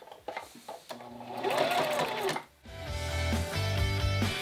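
Domestic electric sewing machine stitching in short stop-start runs while a small square is top-stitched with the needle pivoting at the corners. A brief laugh comes about halfway through, and background music comes in a little later.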